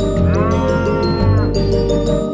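A cow's moo sound effect, one long call that rises, holds and falls, over the song's backing music.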